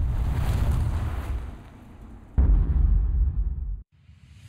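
Two deep booming impacts like cinematic explosion effects, the first at the start and the second about two and a half seconds in, each rumbling and fading, then cut off sharply just before the end.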